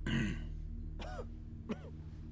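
A man clears his throat, then makes two short groaning hums, each rising and falling in pitch, over a low steady drone.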